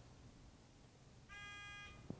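A quiz-show contestant buzzer: one faint, steady electronic beep about half a second long, starting a little past halfway, the signal that a player has buzzed in to answer.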